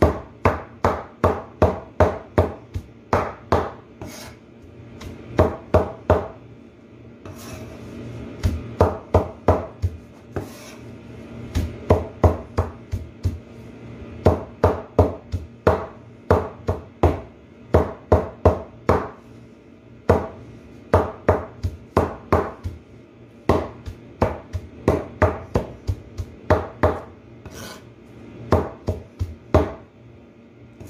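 Meat cleaver chopping a heap of jute mallow (saluyot) leaves on a board: runs of sharp knocks, about three a second, broken by short pauses.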